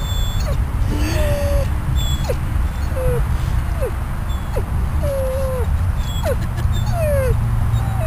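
Yellow Labrador retriever, recovering from abdominal surgery, whining in a string of short, falling whimpers, about one or two a second. His owner says this is his usual whining when he is somewhere new or somewhere he doesn't want to be, which makes it hard for a vet to tell whether he is in pain.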